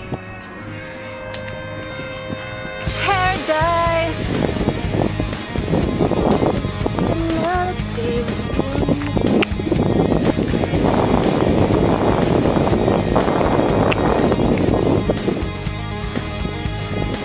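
Background music: a song with a steady beat and a sung melody.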